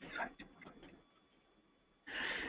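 A few faint, quick ticks and clicks in the first second, then near silence.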